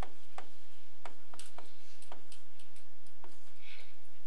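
Stylus tapping and scratching on a touchscreen while handwriting numbers: a string of irregular clicks, about two a second, with a short scratch near the end.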